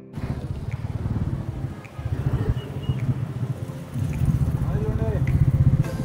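Road traffic: car and motorbike engines running and passing close by, a steady low rumble, with indistinct voices in the background.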